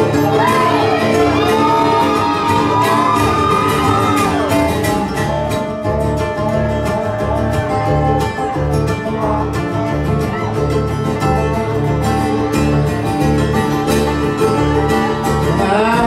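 Bluegrass band playing an instrumental break live: a lap-style resonator guitar plays sliding lead lines over upright bass notes on a steady beat, with mandolin, banjo and acoustic guitar.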